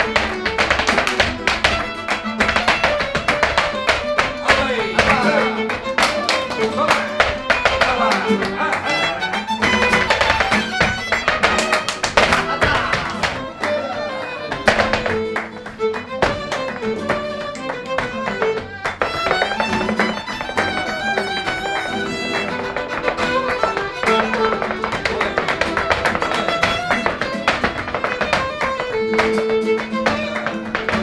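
Live flamenco with violin and acoustic guitar, a gliding violin line over the guitar, driven by dense sharp strokes of the dancers' zapateado heels and toes on the wooden stage and of rhythmic palmas hand-clapping.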